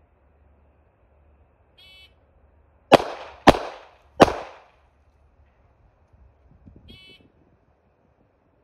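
A shot timer beeps, then three gunshots follow, the first two about half a second apart and the third after a slightly longer pause: a failure drill of two shots to the body and one to the head. Another timer beep sounds near the end.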